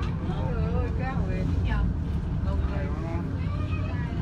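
Steady low rumble of the safari tour vehicle's engine, with people talking over it.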